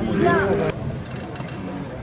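Spectators talking, cut off abruptly a little under a second in, followed by a quieter outdoor background with the faint engine of an approaching rally car.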